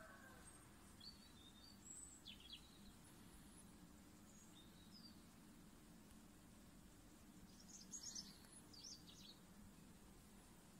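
Near silence: a faint low hum, with a few faint, short, high bird chirps scattered through and a small cluster of them near the end.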